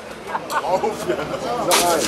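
Wooden mallet knocking a tap into a beer keg: a sharp knock about half a second in and a harder one near the end as beer spurts out, with crowd voices around.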